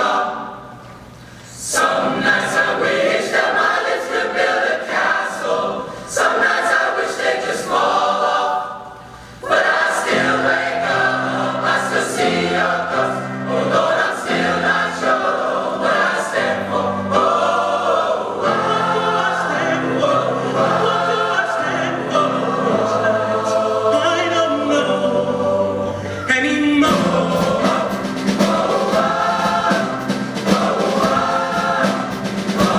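Large choir of boys and young men singing in harmony, with two short breaks in the first ten seconds. Lower held notes come in about ten seconds in and carry on under the upper voices.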